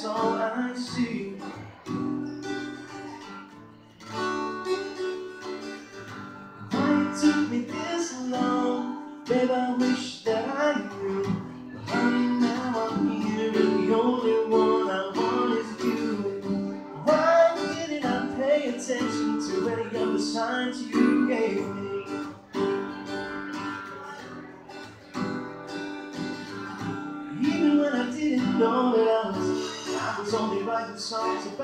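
Acoustic guitar strummed through a song in a live solo performance, the strumming swelling and easing as the chords change.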